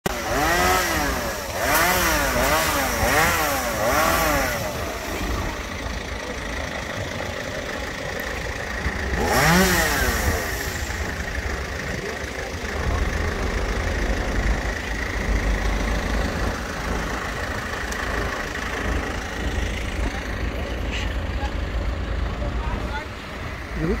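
Chainsaw revved up and let back down four times in quick succession, and once more about nine seconds in, while branches are cut from trees. Under it runs a steady low engine rumble.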